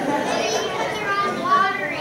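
Children chattering and talking over one another, with one higher child's voice standing out near the end.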